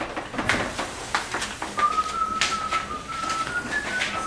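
A person whistling a few held notes at nearly one pitch, starting about halfway in and stepping slightly higher near the end. Scattered knocks from a door and footsteps sound around it.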